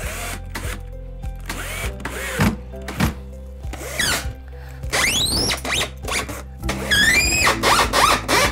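Cordless drill/driver driving long screws into a plywood crate lid, its motor whining up and winding down in several short runs, with the pitch rising and falling each time. Background music runs underneath.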